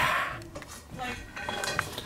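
Dishes and cutlery clattering in a kitchen: one sharp clatter at the start that dies away quickly, then a few lighter clinks.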